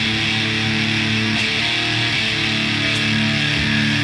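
Opening of a Swedish death metal track from a 1992 tape: electric guitars holding long, sustained chords at a steady level, without drums or vocals yet.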